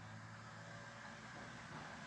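Faint steady low hum with a light hiss, unchanging throughout.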